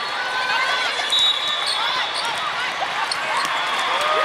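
Volleyball play in a big, echoing sports hall: many athletic shoes squeaking on the court floors and balls being hit and bouncing, over a din of voices calling across the hall.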